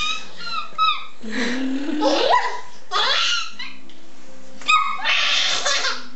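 A seven-to-eight-month-old baby laughing and squealing in short high bursts, with an adult's lower voice making playful sounds between them, one rising in pitch.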